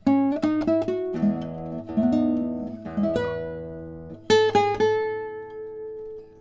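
A 1997 German Perez Barranco 'Senorita' short-scale classical guitar of spruce and maple, played fingerstyle: a phrase of plucked single notes and chords, then a cluster of notes a little past four seconds in that rings on with long sustain.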